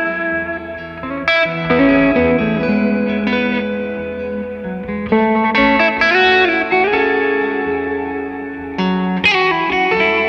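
Fender Player Plus Telecaster electric guitar played through an amp, ringing chords and single-note lines. Fresh strums come in sharply about a second in, twice around five to six seconds in, and again just before the end.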